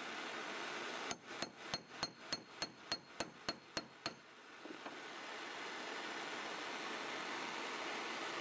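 Hammer striking a steel punch about eleven quick, evenly spaced blows, roughly three a second, driving it through a heated wire chainmail ring on a steel block to punch a rivet hole; each blow rings metallically. The blows stop about four seconds in, leaving only a faint steady background.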